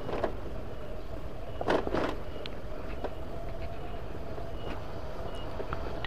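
Motorcycle engine running steadily while riding, with road and wind noise on the microphone; a brief louder sound comes about two seconds in.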